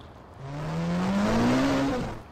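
A car passing and accelerating, its engine note climbing steadily while the rush of road noise swells and then eases off near the end.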